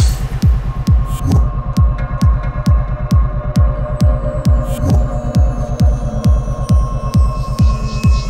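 Psytrance music in a stripped-down passage: a steady electronic kick drum with a falling pitch a little over twice a second, under a sustained synth tone and faint high ticks.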